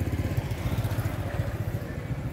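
An engine idling with a steady, rapid low throb.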